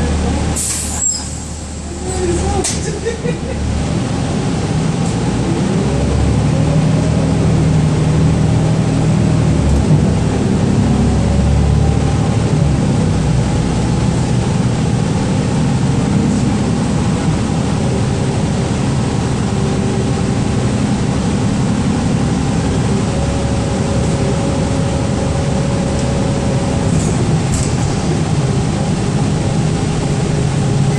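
Interior of a 2012 Gillig Low Floor transit bus: a short hiss of air about a second in as the brakes release, then the drivetrain whine rises as the bus pulls away, settling into steady running.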